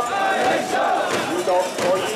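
Mikoshi bearers shouting in chorus as they carry the portable shrine, many men's voices overlapping in a loud, continuous rhythmic chant.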